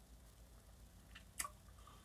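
Near silence, broken by a short wet mouth click from sipping a gin and tonic, about one and a half seconds in.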